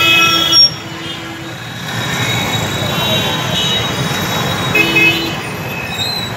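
Congested road traffic with car and motorbike engines, and vehicle horns honking: a short loud toot at the start and another near the end.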